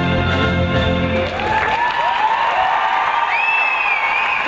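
Backing music playing and ending about a second and a half in, followed by audience applause with voices calling out over it.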